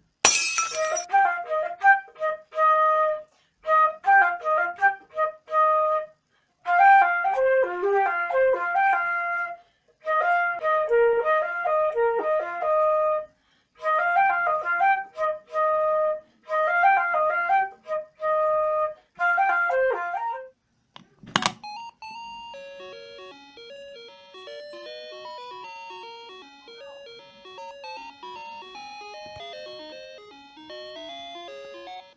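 Concert flute played solo in short phrases with brief pauses between them, opening with a loud crackle of noise. About twenty seconds in the playing stops with a sharp click, and a quieter electronic tune of clear, bell-like notes takes over.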